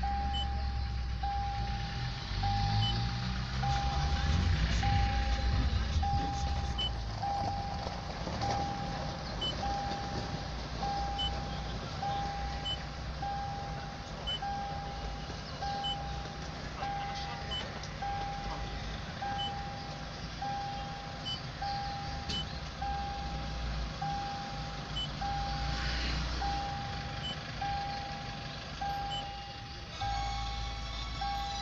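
A car's electronic warning chime beeping steadily, one short mid-pitched beep about every 1.2 seconds, over a low rumble in the cabin.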